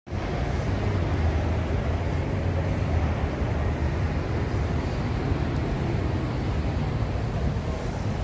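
Steady outdoor city background noise with a low rumble, like distant road traffic.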